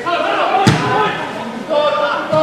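A single sharp thud of a football being struck by a boot, about a third of the way in.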